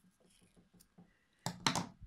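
Scissors cutting a strand of crochet yarn: a quick, sharp snip about one and a half seconds in, after faint light handling ticks.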